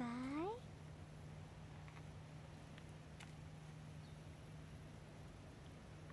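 A brief cry with a clear, rising pitch at the very start, then faint steady background with a low hum.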